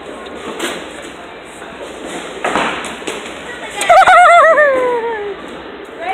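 Bowling-alley din, with a short thud about two and a half seconds in as a bowling ball is let go onto the lane, then a loud wavering cry falling in pitch from a person's voice.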